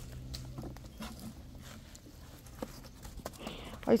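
Quiet background with a few faint, scattered knocks and light scrapes, and a faint low hum in the first second.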